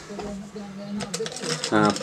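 Ice cubes and a metal bar spoon clinking in a glass as it is picked up and handled, a quick run of small clicks starting about halfway through.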